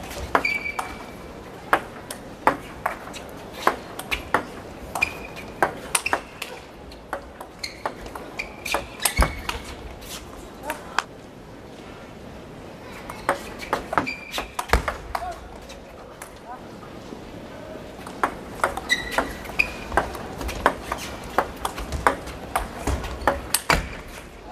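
Table tennis rallies: the ball clicking back and forth off the rackets and the table at about two strokes a second, in several runs of strokes with short pauses between points.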